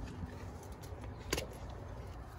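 Faint rustle and rumble of a handheld camera being moved about, with one sharp click about two-thirds of the way through.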